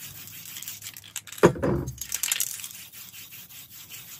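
Rustling and rubbing of a crumpled sheet being dabbed onto the wet spray paint of a painting to lift paint for texture, with one louder knock and crinkle about one and a half seconds in.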